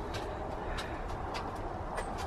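Quiet outdoor background: a steady low rumble with a few faint, brief ticks.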